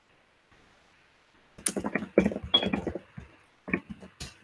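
A quick run of sharp clicks and knocks about a second and a half in, lasting just over a second, then one or two single clicks near the end.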